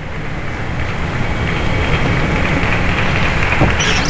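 Arena crowd and hall noise between points, a steady wash of sound that grows gradually louder.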